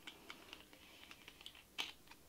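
Plastic screw cap being twisted on a two-liter plastic soda bottle: a faint run of small clicks and ticks from the cap and bottle, with one louder click near the end.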